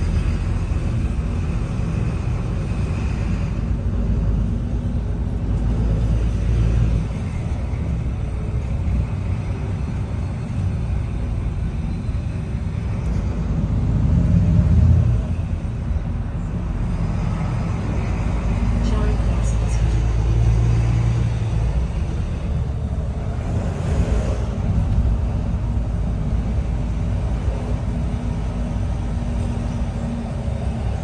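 Volvo B9TL double-decker bus's six-cylinder diesel engine running as the bus drives, heard from inside the upper deck. The engine note swells about halfway through, then drops off suddenly, and runs steadier in the second half.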